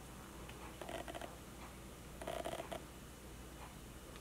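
Two faint, brief scratchy rustles of an eyeshadow brush rubbing and tapping on the eyelid, about a second in and again near the middle, over quiet room tone.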